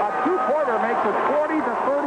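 Speech: a male radio play-by-play announcer calling a basketball game, talking continuously.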